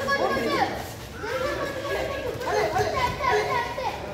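Several voices, children's among them, talking and calling out over one another, with a short lull about a second in.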